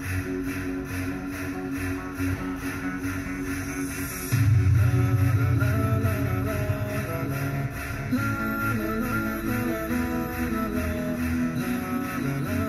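Music playing from an Eclipse AVN770HD MKII car head unit through the car's stock factory speakers, heard inside the cabin. About four seconds in, a heavy bass line comes in and the music gets louder.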